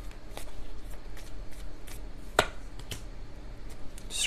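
A tarot deck being shuffled by hand: a run of soft, irregular card flicks and snaps, with one sharper snap a little past halfway.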